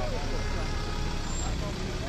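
Ford Ranger pickup truck rolling slowly past close by: a steady low engine rumble with tyre noise on the road.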